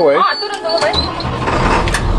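Bus engine being started with the ignition key: a high intermittent beep sounds until about a second in, when the starter cranks and the engine catches, ending in a steady low rumble.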